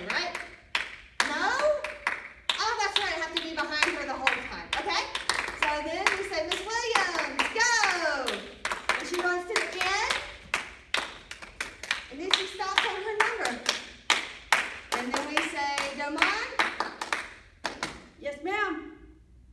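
Hands clapping over and over in a clap-up routine, with sharp claps scattered throughout. Animated, sing-song voices call out over the claps.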